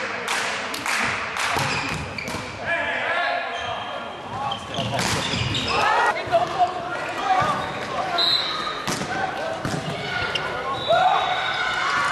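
Indoor volleyball rally: sharp ball hits and thumps, with players shouting and calling out, echoing around a large sports hall.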